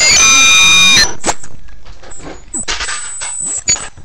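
A child's high-pitched scream held on one steady pitch for about a second, then a string of knocks and rustles from movement close to the microphone.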